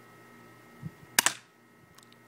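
A cheap spring-powered airsoft gun giving one sharp click a little over a second in, with a faint tick just before it.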